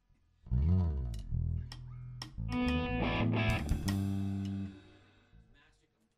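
Electric bass and guitars sound a few seconds of notes, opening with a sliding bend in pitch and then holding low sustained notes. The notes ring out and stop just before the end.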